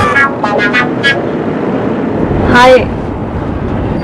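Steady engine and road noise of a moving bus, heard inside the cabin under the voices.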